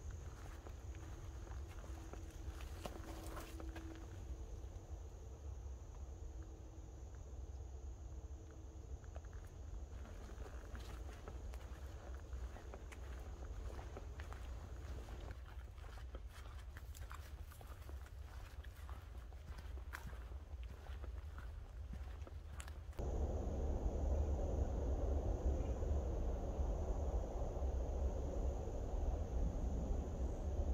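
Footsteps of a hiker walking along a sandy, leaf-strewn trail, with faint scattered crunches and a steady low rumble on the microphone that gets louder about two-thirds of the way through.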